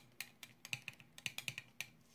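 A quick, irregular run of about a dozen light clicks and taps, stopping shortly before the end.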